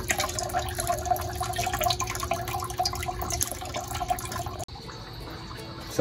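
Water trickling and splashing from a PVC return pipe into a plastic reservoir bucket, the hydroponic pipes draining after the pump has been switched off. It cuts off abruptly a little before the end.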